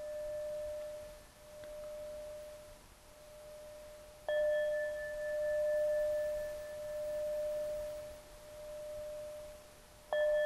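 Tibetan singing bowl struck with a mallet and left to ring, marking the close of a meditation. A pure tone hums on with a slow, wavering pulse, and the bowl is struck again about four seconds in, then rings on and slowly fades.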